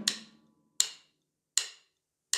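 Wooden drumsticks clicked together three times, evenly spaced a little under a second apart, each a short sharp click: a count-in before a drum groove.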